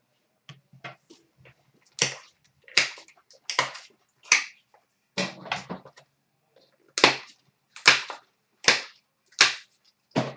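A run of sharp clacks and knocks, roughly one every three-quarters of a second with a short gap near the middle, as hard objects are handled and set down.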